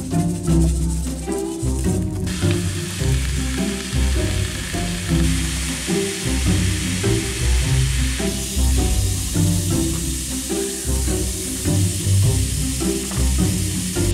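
Pork chops sizzling as they sear in a cast-iron skillet. The sizzle starts suddenly about two seconds in, is strongest for the next six seconds, then goes on more softly, under background music with a steady beat.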